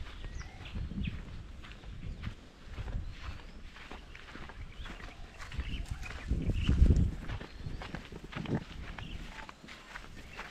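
Footsteps of several people on a dry dirt path, with low rumbling buffets on the microphone, loudest about seven seconds in, and a few short bird chirps.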